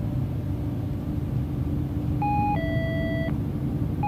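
Steady low rumble of a bus interior with a faint even hum. About two seconds in comes one two-part electronic beep: a short tone, then a higher chord held for under a second.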